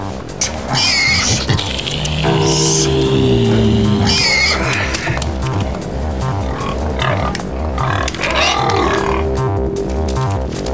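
Pigs squealing, about four sharp high cries, as they are handled by the ear, over background music with a steady electronic beat.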